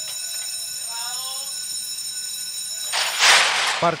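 Starting-gate bell giving a steady electric ringing that cuts off about three seconds in, as the stalls crash open with a loud burst of rushing noise from the horses breaking.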